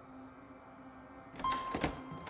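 A quiet low hum, then a quick cluster of sharp knocks and clicks about one and a half seconds in.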